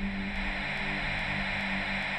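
Sound effect for an animated logo sting: a steady static-like hiss over a low held music tone, with faint high ticks about three a second.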